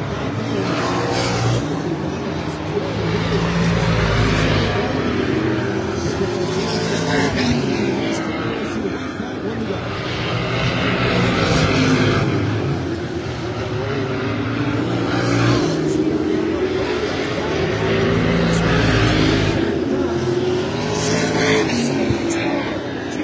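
A field of Limited Late Model stock cars racing around a short oval at full throttle. The engine sound swells and falls three times as the pack comes past, roughly every seven or eight seconds, with the pitch rising and dropping on each pass.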